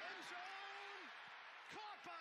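Television play-by-play commentator's voice with one long drawn-out call, over a steady haze of stadium crowd noise.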